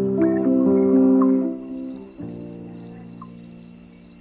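Soft background music with held chords, which fall lower and quieter about two seconds in. From about a second in, a high, steady cricket chirping sits over the music.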